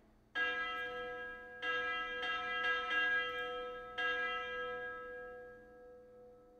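Bell-toned instrument patch played from a MIDI keyboard and heard through studio monitors: four struck bell notes, each ringing on and fading, the last dying away slowly.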